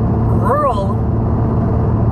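A steady low rumble runs under everything, with a short wavering vocal hesitation sound from a man about half a second in.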